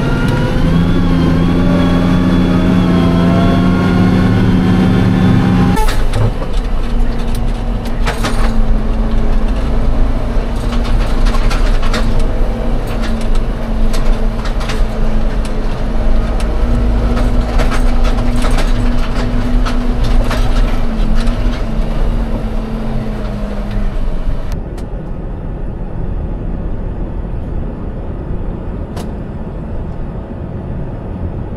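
Tractor engine running steadily as heard inside the cab on the road, with a rising whine over the first few seconds as it gathers speed. After a sudden change about six seconds in, the engine drones on evenly with frequent clicks and rattles from the cab, and near the end the sound drops to a quieter, duller vehicle drone.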